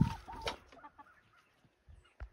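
Domestic hen clucking: a short call about half a second in, after a louder sound at the very start. It then goes mostly quiet, with a few faint ticks.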